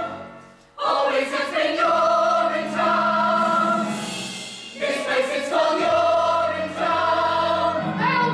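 A full cast of voices singing together as a choir in long held chords. There is a short break just under a second in, and the sound thins briefly about four and a half seconds in before the chords swell again.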